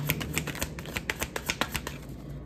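A deck of tarot cards being shuffled by hand, the cards slapping together in quick, even clicks, about eight a second.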